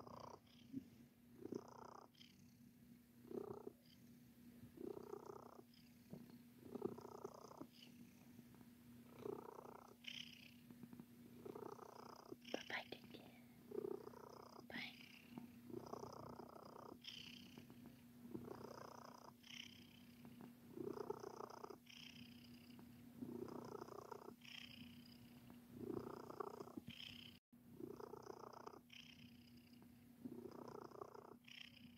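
Flame point Siamese cat purring faintly while being petted, the purr swelling and fading in regular pulses about every one and a half to two seconds.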